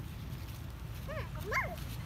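Long-tailed macaque giving two short, high calls a little past halfway, each rising and falling in pitch, the second louder, over a steady low rumble.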